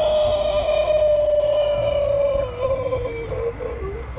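A voice holding one long wailing note that slowly falls in pitch and wavers near the end.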